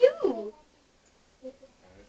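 A short vocal exclamation, a person's voice sliding down in pitch over about half a second, then quiet.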